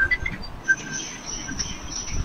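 Background noise on an open video-call line: a few short, high chirps over a steady thin high whine and low rumble.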